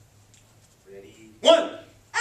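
A child's short, sharp martial-arts shout (kihap) about a second and a half in, loud from the start and fading quickly, as a taekwondo self-defence technique is struck.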